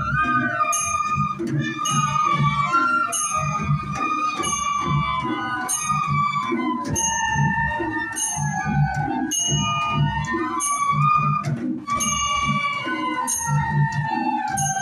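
A group of bamboo flutes (bansuri) playing a traditional Newari melody together, over a dhime drum beating a steady rhythm with bright metallic strikes keeping time.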